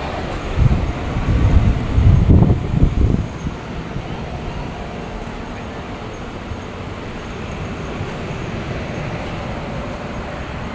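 Low rumbling buffets on a handheld microphone for about the first three seconds, then a steady even hum and hiss, as from the large air-conditioning units in a fair tent.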